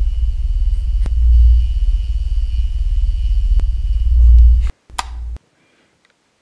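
Low, loud suspense rumble of a horror-film soundtrack, swelling every few seconds under a thin steady high tone. It cuts off abruptly about five seconds in after a short sharp burst.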